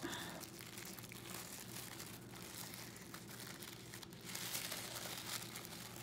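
Tissue and gift-wrapping paper rustling and crinkling as it is handled and unwrapped, faint, with a louder stretch about four seconds in.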